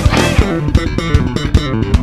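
Instrumental band music with no singing: a busy line of short plucked bass guitar notes stepping up and down over regular drum hits. The higher instruments thin out in the second half, leaving the bass to the fore.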